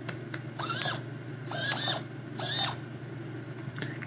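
Small blue hobby micro servos running under test, their little geared motors whining in three short moves of about a third of a second each, the pitch rising then falling on each move.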